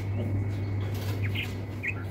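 A few short bird chirps, three brief calls in the second half, over a steady low hum.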